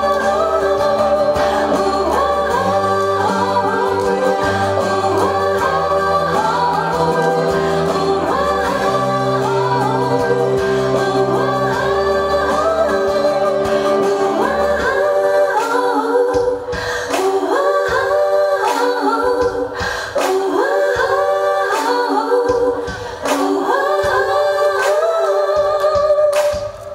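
A woman singing a pop song live into a handheld microphone over musical accompaniment. About fifteen seconds in the bass drops out, leaving her voice over sparser beat hits.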